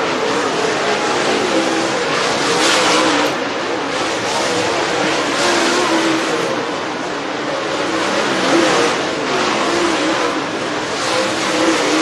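Super late model dirt race cars running hot laps at speed, their V8 engines rising and falling in pitch as they go through the turns.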